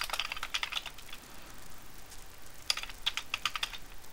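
Typing on a computer keyboard: a quick run of keystrokes at the start and another about three seconds in.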